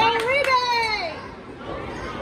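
A young person's high-pitched shout, about a second long and falling in pitch at its end, over crowd chatter.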